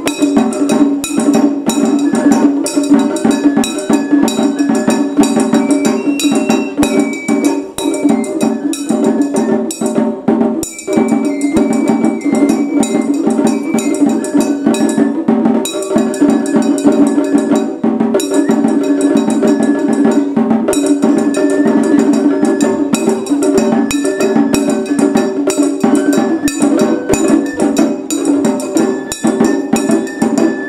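Japanese festival hayashi music played live: a shinobue bamboo flute melody over rapid, steady strokes on small shime-daiko drums and a large drum.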